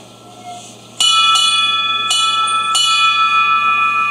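A ship's bell struck four times, roughly in two pairs, each strike left to ring on in a clear sustained tone. This is the kind of bell-ringing used in Navy side honors, and the officers salute as it sounds.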